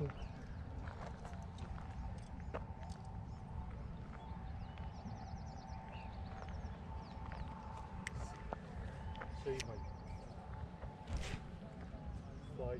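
Outdoor ambience at the water's edge: wind rumbling on the microphone, with a faint steady hum and scattered light clicks and taps as a lure is cast and reeled in on a spinning rod.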